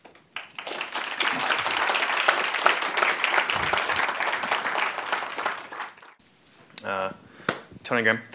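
Audience applauding, which dies away about six seconds in.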